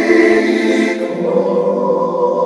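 Wordless choir-like voices holding a sustained gospel chord at the close of a sung phrase, moving to a lower chord about a second in.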